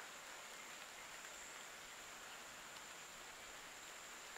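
Quiet woodland background with a faint, steady high-pitched insect drone.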